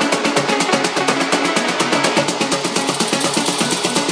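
Afro house DJ mix playing with its bass cut out, a build-up: fast, even percussion ticks about eight times a second over a plucked melodic riff.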